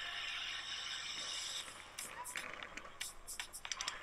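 Audio of a skatepark BMX clip playing back on a computer: a steady rushing hiss for about a second and a half, then a scatter of light clicks and knocks.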